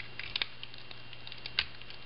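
Plastic parts of a Transformers action figure being pulled apart during transformation: a few small, sharp plastic clicks, a cluster about a third of a second in and another near the end, over a steady low hum.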